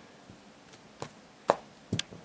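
Tarot cards being handled, three short sharp taps as cards are drawn and squared on the deck, the loudest about halfway through.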